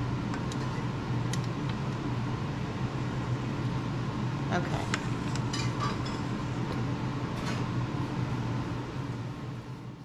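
A spatula scraping and tapping against a stainless steel mixing bowl as cream-cheese frosting is worked out of it, in light scattered clicks, over a steady low background hum.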